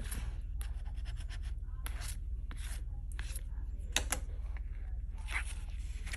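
A metal scratching tool scraping the coating off a scratch-off lottery ticket in short, irregular strokes, over a low steady hum.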